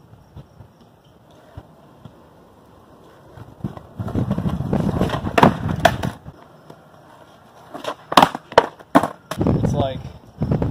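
Skateboard wheels rolling on concrete, with sharp clacks of the deck striking the ground. There are two bursts, one about four seconds in and one about eight seconds in, the second a quick run of three or four clacks.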